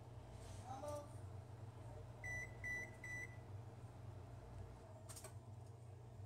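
Three short electronic beeps from a kitchen appliance, about half a second apart, over a low steady hum, with a faint click a couple of seconds later.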